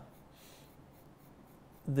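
Faint scratchy rustle of a barber cutting hair with scissors close to the ear.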